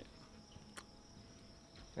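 Near silence outdoors, with a faint, steady high-pitched insect chirring, like crickets, and one faint click a little under a second in.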